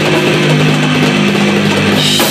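Amplified electric guitar holding one long sustained chord while the drum kit drops out; the drums come back in right at the end.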